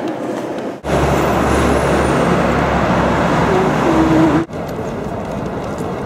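A moving vehicle's steady low rumble, loud, lasting about three and a half seconds and cut off abruptly.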